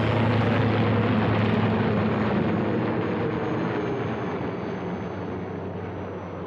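Helicopter flying overhead: a steady low drone of rotor and engine that slowly fades.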